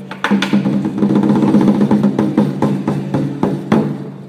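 Chinese lion dance percussion music: a fast, dense run of drum strokes over a steady low ringing, with sharp strong hits near the start and again just before the end.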